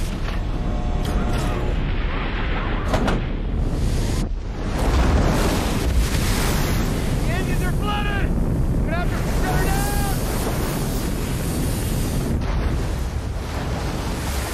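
Film sound effects of a giant ocean wave engulfing a small spacecraft: a loud, dense roar of rushing water and wind over a deep rumble. A couple of short vocal cries come through about halfway.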